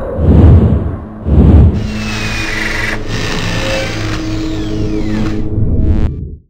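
Logo sting sound effect: two heavy booming hits about a second apart, then a steady machine-like whirr with falling whistling tones running under it.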